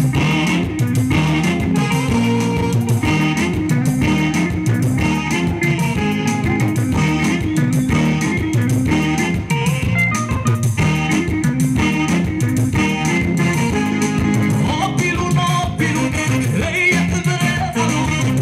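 Live band playing Eritrean pop music: electric bass, guitar and saxophone under a male singer on a microphone.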